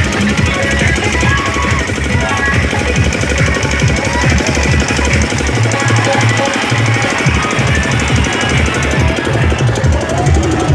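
Loud dance music with a fast, heavy bass beat, played through a truck-mounted loudspeaker system.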